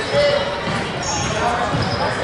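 Voices of people in a large gym hall, with a few dull low thuds.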